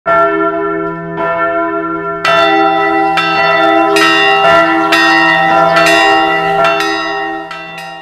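Church bell ringing, struck about once a second, each strike ringing on over a steady low hum. It rings louder from about two seconds in.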